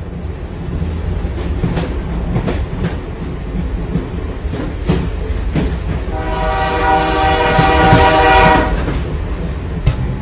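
A train rolling on the rails: a steady low rumble with irregular clicks of the wheels over rail joints. A long horn blast swells in about six seconds in and lasts until nearly nine seconds, the loudest part.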